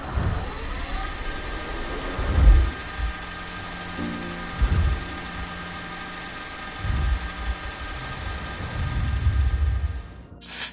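Handling noise as hands fit parts onto an Atomos Ninja V recorder and a camera rig: low thumps and rubbing on the microphone, five or six times, the loudest about two and a half seconds in. Under them a steady whine rises in pitch in the first second, then holds.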